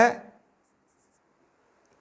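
Marker pen writing on a whiteboard, a few faint high strokes after a man's spoken word at the start.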